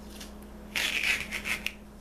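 Strip of duct tape being peeled up off the surface it is stuck to: a few quick crackling rips over about a second, starting near the middle, with a sharp click at the end.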